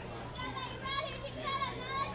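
Several high-pitched girls' voices shouting a sing-song cheer, starting about half a second in, over a faint steady hum.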